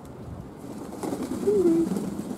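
Pigeon cooing close by: one low coo in the second half that drops in pitch at its end.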